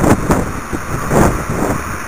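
Wind buffeting a camera microphone in irregular gusts, a loud rumbling rush with no steady tone.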